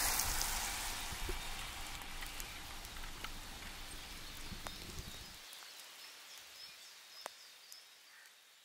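Light rain falling outdoors: a steady patter with a few sharper drip ticks, fading out gradually toward the end.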